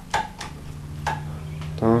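A wall light switch flipped a few times, three sharp clicks in the first second, with nothing coming on: the house has no power.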